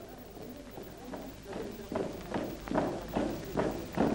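Footsteps of a group of men marching on a dirt path, a regular tread that grows louder about a second and a half in.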